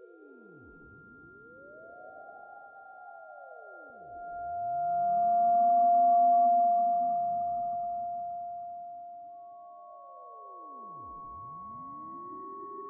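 Electronic intro of a dark industrial/witch-house track: steady sine-like synth tones with slow pitch sweeps that dive down and climb back up, no beat. It swells to a peak about halfway through and then eases off.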